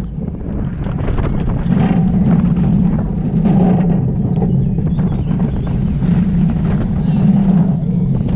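Steel roller coaster train running at speed, heard from the front seat: a steady low rumble of the wheels on the track, with wind buffeting the microphone.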